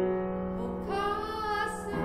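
A woman singing in Japanese over grand piano accompaniment. The piano holds chords throughout, and her voice comes in under a second in and sustains one long note until near the end.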